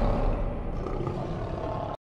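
Tail of a lion-roar sound effect in an animated logo sting, a low rumbling roar that slowly fades and then cuts off abruptly just before the end.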